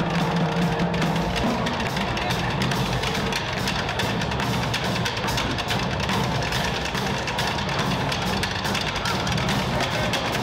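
A marching drumline playing a dense, steady cadence on snare drums, tenor drums and tuned bass drums, with cymbals.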